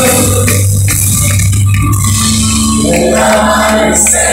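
Live rock band playing loudly in an arena, with singing, heard from within the audience.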